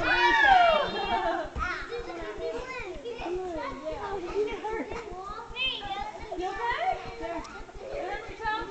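Young children's voices as they play together in a foam pit: overlapping high-pitched calls and chatter, with a loud, falling shout in the first second.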